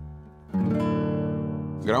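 Nylon-string classical guitar: a chord plucked about half a second in and left ringing, dying away slowly.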